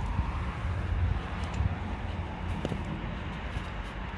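Steady low outdoor background rumble, with a few faint clicks about midway.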